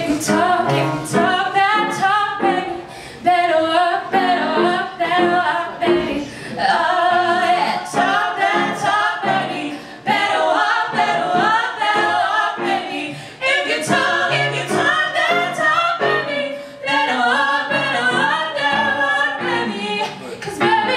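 Several women singing a musical-theatre song together into microphones, their voices amplified through a sound system.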